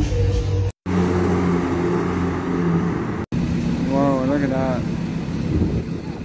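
Sports car engines running at low revs as the cars pull away, in short clips joined by two abrupt cuts; the first is a Chevrolet Corvette's V8. A person's voice is heard briefly about four seconds in.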